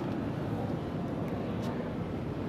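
Steady, low rumbling background noise of a large room, with a couple of faint clicks about a second and a half in.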